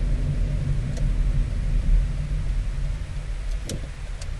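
A steady low engine rumble with a low hum, as of an idling vehicle, with a faint click about a second in and another near the end.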